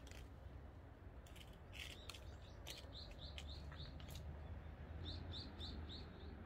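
A small bird chirping: short high notes repeated about four a second, in a run about halfway through and another near the end. A few sharp clicks of twigs and branches being handled come before the chirps.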